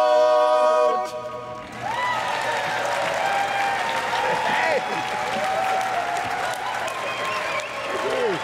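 Barbershop quartet holding its final four-part a cappella chord, which cuts off about a second in. After a brief pause, an audience breaks into applause and cheering with whoops.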